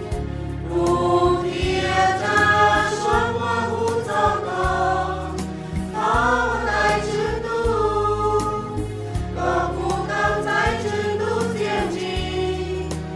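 Choir singing a Christian hymn over a band accompaniment with bass and a steady beat.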